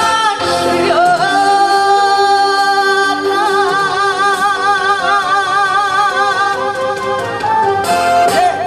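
A woman singing a Korean song into a handheld microphone over instrumental accompaniment. She holds one long note from about a second in, which turns to a wide vibrato around the middle and breaks off near the end.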